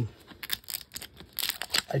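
Thin plastic wrap being peeled and torn off a toy capsule ball, crinkling in short crackles that get busier in the second half.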